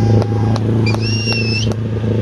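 Suzuki 4x4's engine running steadily as the vehicle pushes through deep water. About a second in, a shrill whistle rises and is held for most of a second.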